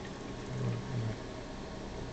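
Steady low hum with a faint even hiss of room noise.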